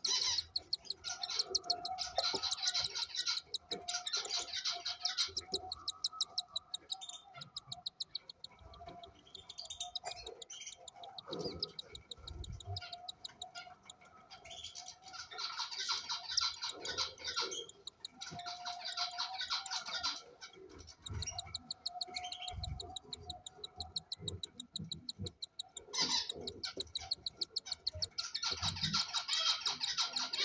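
Cockatiel chick in the nest box giving rapid, pulsed begging calls in bouts of a few seconds, with short lulls between.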